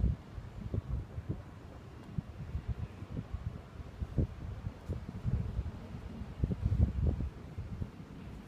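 Low, irregular rumbling and bumping noise on the microphone, with a louder stretch about six and a half to seven seconds in.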